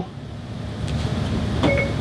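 Short electronic chime of Apple CarPlay's Siri voice assistant starting to listen, from the head unit's speaker, heard over a low steady hum about three-quarters of the way through.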